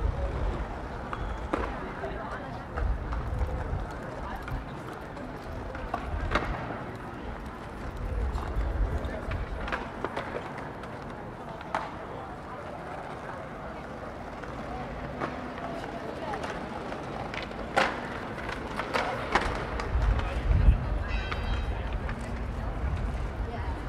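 Outdoor street ambience in a pedestrian square: wind buffeting the microphone in gusts, indistinct voices of passers-by, and scattered sharp clicks and knocks.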